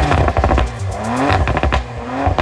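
Car engine revving sound effect in an intro sting: one rising rev about a second in, among many quick sharp hits.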